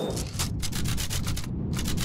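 A fast, even run of scratchy rubbing noise, about ten strokes a second, with a short break in the hiss about one and a half seconds in.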